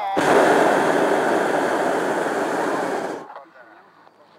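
Hot-air balloon's propane burner firing in one loud blast of about three seconds, starting abruptly and cutting off sharply.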